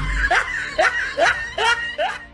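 A person laughing: a run of four short 'ha' bursts about half a second apart.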